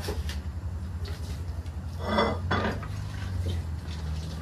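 Metal kitchen tongs clinking against a ceramic dish as they grip and lift beans: a few separate clinks, the loudest about halfway through ringing briefly, over a steady low hum.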